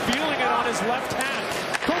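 Hockey arena crowd noise, many voices overlapping, with sharp knocks of sticks and puck on the ice; the clearest crack comes near the end as a shot is taken.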